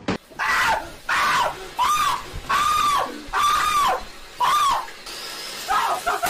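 A person screaming over and over: about six loud, high-pitched screams, each rising and falling in pitch, roughly one a second, followed by a steady hiss near the end.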